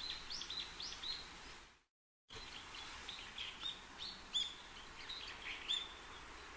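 Faint birdsong: short chirps and tweets, several a second, over a light background hiss. About two seconds in, the sound cuts out completely for about half a second, then the chirping resumes.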